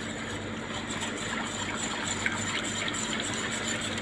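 A wire whisk stirring melting dark chocolate into hot milk in a stainless steel stockpot: liquid swishing with a few light taps of the whisk on the pot. A steady low hum runs underneath.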